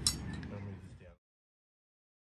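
A metallic clink from the boat trailer's metal parts being handled, over faint outdoor background noise. The sound cuts off to silence about halfway through.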